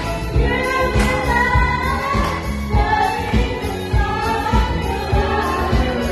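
Karaoke: a woman singing into a microphone over a pop backing track with a steady beat, played loud through a speaker.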